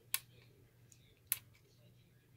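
Two sharp little clicks about a second apart: the small slide DIP switches on a fire alarm horn's circuit board being flipped by a fingertip.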